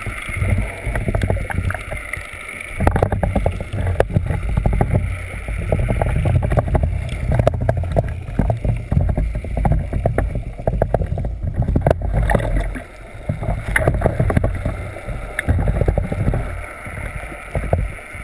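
Water sloshing and bubbling around a camera held just under the surface, heard as an uneven low rumble with dense crackling and clicks that eases briefly about two-thirds of the way through.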